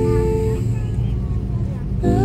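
Steady low rumble of an airliner's cabin during the takeoff roll, under background music whose held notes stop about half a second in.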